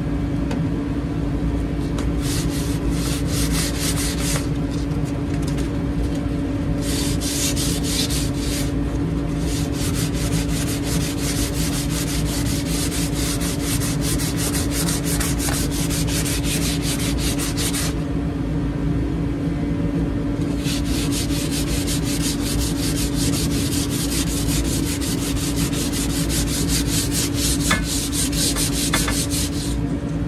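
Coarse-grit sandpaper rubbed by hand in quick back-and-forth strokes along a wooden shovel handle, stripping off its weathered varnish. The sanding comes in long spells, with short breaks about 5 and 9 seconds in and a longer one about two-thirds of the way through. A steady low hum runs underneath.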